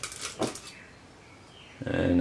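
Quiet room tone with a single light knock about half a second in, from handling the glass jars and plastic tubs. Near the end comes a short low hummed voice sound, like an 'mm'.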